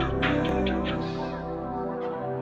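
A melodic sample loop playing back in a beat-making session: sustained pitched notes with a few light ticks in the first second, while the low bass fades out about a second in.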